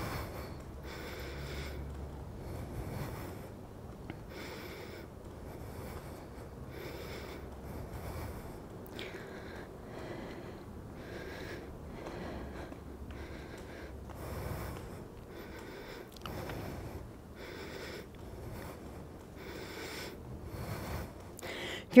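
A woman's breathing while she pedals a portable recumbent exercise cycle at a steady moderate effort: soft in-and-out breaths, about one a second.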